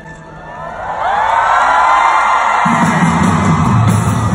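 Arena crowd screaming and cheering, swelling loud about a second in, and a full band's bass and drums kicking in near the end at a live pop concert.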